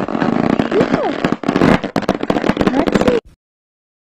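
Loud, harsh, crackling distorted sound full of sharp clicks, with a few sliding tones through it, that cuts off abruptly about three seconds in.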